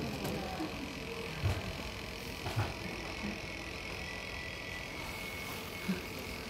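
A steady low whir and hum, typical of the small electric motor driving an animated Christmas village display with a turning carousel. Soft knocks come about one and a half and two and a half seconds in.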